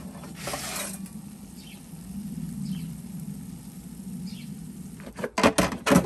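A metal pizza turning peel scrapes across the stone floor of an Ooni Fyra 12 pellet-fired oven for about the first second. A steady low hum follows, and near the end come several sharp metallic clicks and knocks as the oven door is handled.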